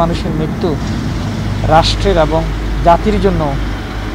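Mostly speech: a man's voice in short phrases with pauses between them, over a steady low background rumble.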